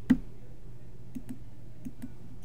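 A few faint computer mouse clicks, two close together just past a second in and one more near the end, as dimensions are placed in CAD software.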